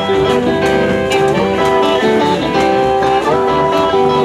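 Lead guitar playing a melodic line of single notes over a live band with drums, in Congolese gospel style.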